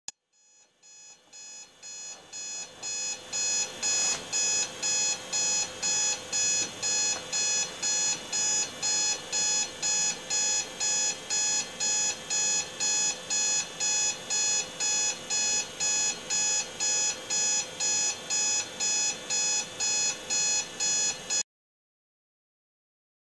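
Electronic alarm clock beeping about twice a second, growing louder over the first few seconds, then steady, and cutting off suddenly near the end.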